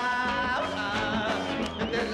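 Live rock band playing, with guitar and a dense full-band mix that does not pause.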